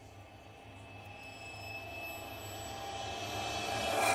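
Logo-sting sound effect: a swelling riser over a low drone, with a few high steady tones, that grows steadily louder and ends in a short loud hit at the very end.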